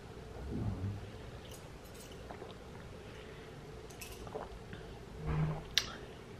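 Faint gulping and swallowing from a person drinking out of a plastic bottle, with a steady quiet room hum behind it. A short closed-mouth hum comes near the end.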